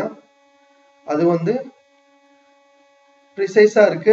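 A man's voice speaking briefly about a second in and again near the end, with a faint steady electrical hum carrying through the pauses between.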